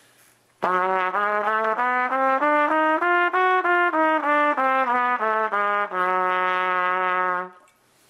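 Trumpet playing the A-flat diminished (whole-step/half-step) scale in its lower octave: a run of even notes up an octave and back down, ending on a long held low note.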